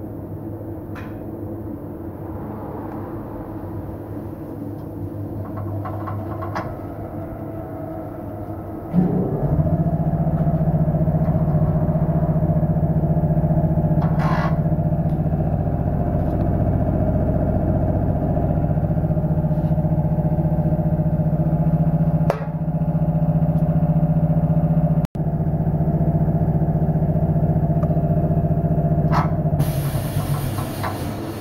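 Tyre balancing machine spinning a mounted Bridgestone Nextry tyre and wheel. A lower running noise for the first nine seconds steps up suddenly into a loud, steady hum as the wheel comes up to speed, with a few light clicks along the way.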